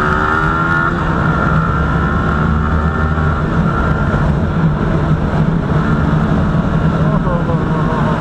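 Yamaha R15 V3's single-cylinder engine and exhaust, running loud with the dB killer removed from the silencer. The engine pulls up through the revs in the first second as the bike accelerates, then holds a steady note at cruising speed.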